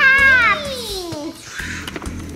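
A young girl's voice drawing out a long sing-song "bye" that glides steadily down in pitch and dies away about a second and a half in.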